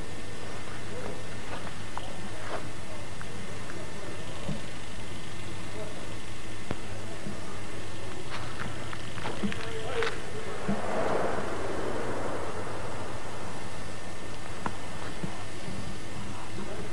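Faint, indistinct voices over a steady low hum, with scattered small handling clicks and a brief rustle about eleven seconds in.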